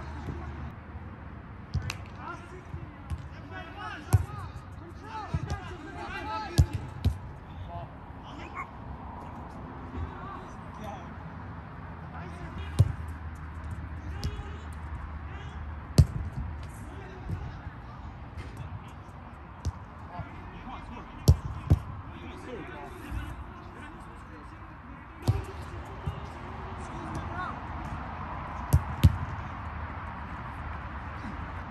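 A football being kicked hard again and again on an artificial-turf pitch: about ten sharp thuds of boot on ball a few seconds apart, some in quick pairs, the loudest about 16 seconds in. Faint voices of players are heard between the kicks.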